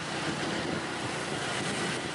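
Steady road traffic noise from cars and engines on a busy road.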